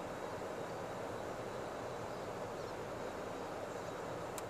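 Steady outdoor background noise, an even low rumble with no distinct events.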